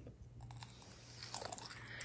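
Potato chips being chewed: a few faint, scattered crunches.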